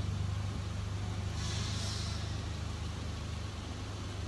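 A steady low mechanical hum runs throughout, with a short high hiss about a second and a half in.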